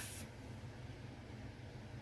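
Quiet room tone with a faint steady low hum; no distinct sound event.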